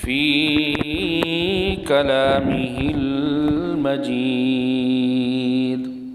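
A man's voice chanting Arabic in a drawn-out, melodic recitation, holding long notes. The pitch steps lower about four seconds in, and the last note is held until it fades just before the end.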